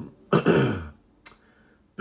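A man clearing his throat once, a short burst lasting about half a second, followed by a faint tick.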